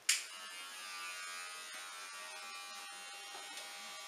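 Electric hair clippers switched on with a sudden click, then running with a steady buzz.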